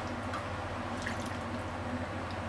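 A few faint drips and light taps of broth and ladle as simmered daikon, pork and egg are ladled from a pot into a bowl, over a steady low hum.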